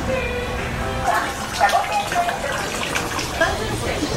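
Indistinct chatter of several people talking nearby, over a steady rushing background noise.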